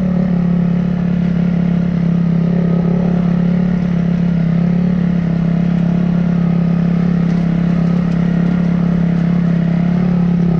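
Dirt bike engine running at one steady pitch under constant throttle.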